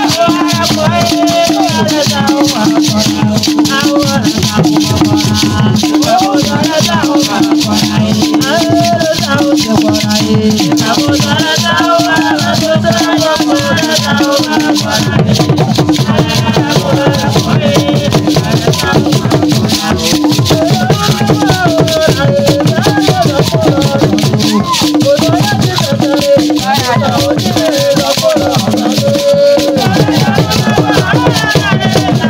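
Traditional drumming with shaken rattles and voices singing in a steady, dense rhythm; the deeper drumming grows stronger about halfway through.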